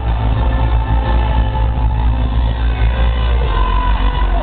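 Rock band playing live through a concert PA, recorded from the crowd, with a heavy, booming bass that dominates the mix.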